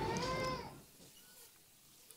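Faint store background sound carrying one high, rising, voice-like note, which fades out to silence about a second in.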